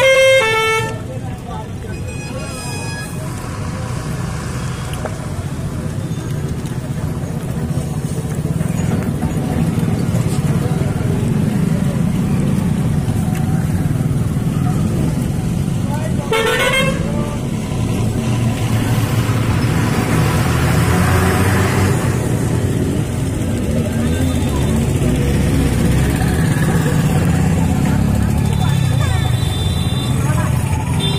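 Steady engine and road rumble from riding in a moving vehicle along a busy street. A horn honks right at the start, and another short honk sounds about sixteen seconds in.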